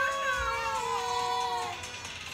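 A young child's voice singing one long drawn-out note that steps down in pitch and slides off about a second and a half in.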